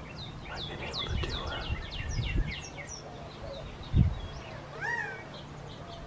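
Many quick, high descending chirps from small birds through the first half, then a single rising-and-falling call about five seconds in from a male Gambel's quail. A brief low thump comes just before that call.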